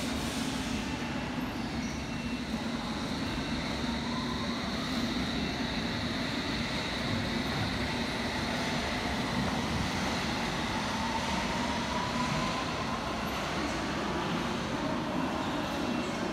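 London Underground S7 Stock train running through the station: a steady rumble with a low hum, and a whine that rises in pitch about four seconds in and again, more slowly, from about eight to twelve seconds in.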